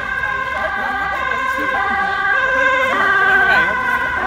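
An electronic siren sounding steadily on several held pitches with a slight warble, a little louder about three seconds in, with voices faintly underneath.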